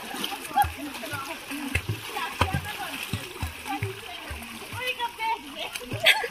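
Water splashing as swimmers paddle with their arms and kick while floating in rubber inner tubes in a swimming pool, with voices mixed in.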